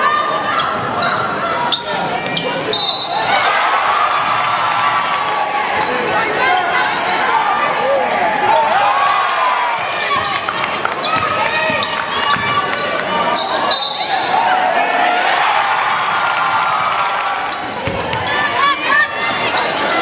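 Basketball game sound in a gymnasium: a ball bouncing on the hardwood court amid indistinct calls and chatter from players and spectators.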